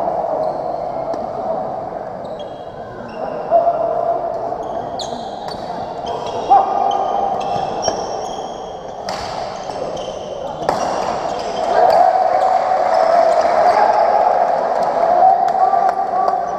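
Badminton doubles rally on a wooden court: sharp racket hits on the shuttlecock and short high squeaks of shoes on the floor. The chatter of onlookers is in the background and gets louder in the second half.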